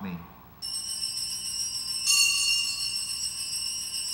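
Altar bells shaken at the elevation of the chalice, a cluster of small bells jingling continuously. They start about half a second in and grow louder about two seconds in.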